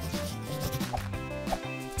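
Coloured pencil rubbing over a doll's painted eye, a soft scratchy shading sound, over background music.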